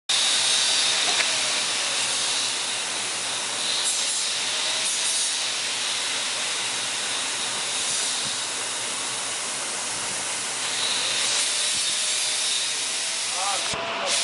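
Industrial dough-processing machine running with a steady, loud hiss and a few faint clicks.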